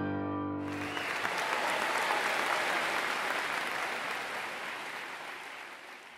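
A grand piano's final chord rings and stops, then applause starts about half a second in and slowly fades away.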